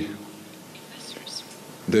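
A man's speaking voice in a pause mid-sentence: a held syllable trails off at the start, then a low pause of nearly two seconds with faint breath noise, before speech picks up again at the very end.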